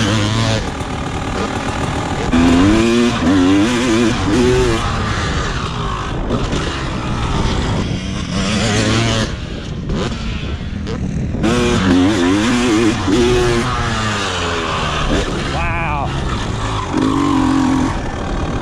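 1999 Honda CR250R's 250 cc two-stroke single-cylinder engine under hard riding, revving up in repeated rising pulls and easing off in between, over wind noise on the helmet microphone.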